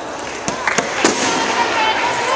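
Badminton rackets striking a shuttlecock: three sharp smacks in quick succession about half a second to a second in. A voice follows.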